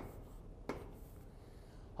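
Faint chalk strokes on a blackboard, with one short sharp tap under a second in.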